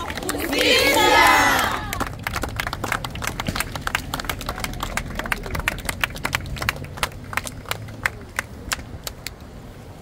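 A crowd shouts together in a loud chant lasting about a second and a half. Scattered hand clapping follows and thins out and fades toward the end.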